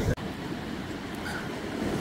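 Steady rushing noise of surf breaking on the shore, with wind rumbling on the microphone.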